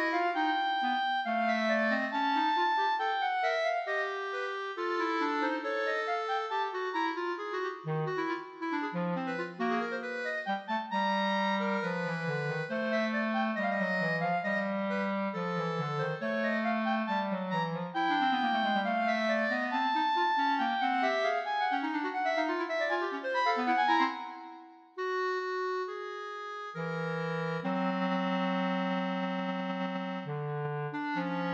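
Two clarinets playing a contemporary duo, two interweaving lines of quick, angular notes and runs, the lower part dipping into the instrument's low register. About 25 s in the music briefly drops away, then both clarinets settle into long held notes.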